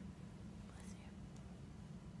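Quiet room tone: a steady low hum, with faint whispering about a second in.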